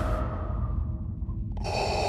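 Darth Vader's mechanical respirator breathing: a hissing breath starts suddenly about one and a half seconds in, over a low steady hum.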